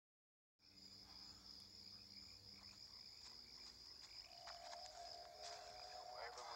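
Faint night chorus of crickets, a steady high trill, starting about half a second in. A lower steady tone joins about four seconds in.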